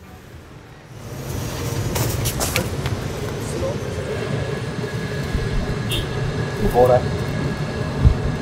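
Street traffic ambience: a steady low rumble and hiss of vehicles that swells up about a second in and holds, with a few sharp clacks around two seconds in.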